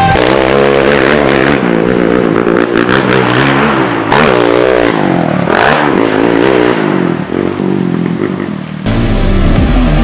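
Honda TRX450R sport quad's single-cylinder four-stroke engine revving hard under riding, its pitch rising and falling again and again as the throttle is worked. About nine seconds in, the sound cuts to loud music.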